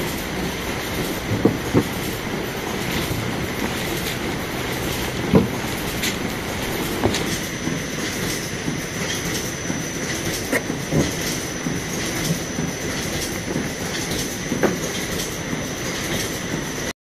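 XIESHUN XS-1450 folder gluer running: a steady mechanical clatter with scattered sharp knocks. A thin high whine joins in about six seconds in.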